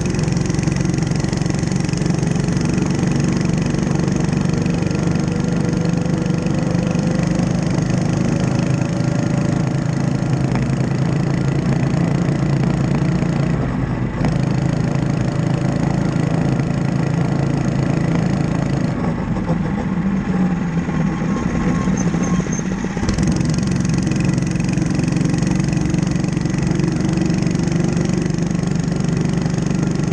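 Small engine of a mini bike running steadily while riding. Its pitch climbs slowly over the first several seconds. About two-thirds of the way in it drops back for a few seconds, then comes back in abruptly.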